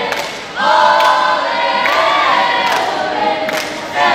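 A group of young scouts singing a yel-yel cheer chant in unison, loud and accompanied by a sharp beat about once a second. There is a brief break about half a second in before the voices come back in together.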